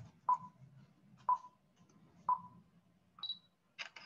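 Stop Motion Studio's capture timer counting down: three short beeps a second apart, then a higher beep and a camera-shutter click as the frame is taken.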